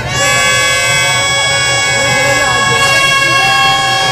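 A reedy wind instrument holds one long, steady, loud note, between phrases that slide in pitch, with crowd noise underneath.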